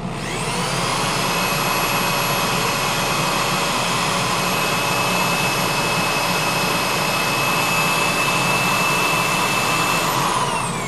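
Corded power drill with a small foam-backed sanding disc, spinning up with a rising whine, running at a steady high pitch while sanding a turned holly bowl, and winding down near the end.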